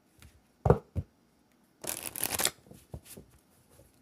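A deck of cards being shuffled: a brief rustle of about half a second, with a few light taps around it.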